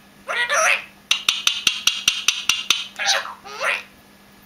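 Indian ringneck parakeet chattering in short, speech-like phrases that form no clear words. Between them comes a quick run of about ten sharp clicks, roughly six a second.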